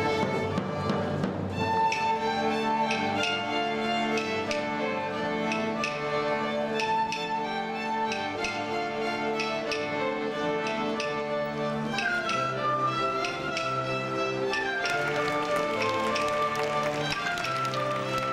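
A student string ensemble led by violins playing a medieval-style dance tune, with percussive taps marking the beat.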